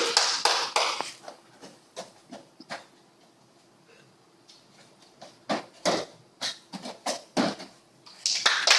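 Bare feet and hands thumping on foam gymnastics mats during a tumbling pass. A few soft footfalls at first, a quiet stretch in the middle, then a quick run of sharper thumps in the second half as she springs and lands.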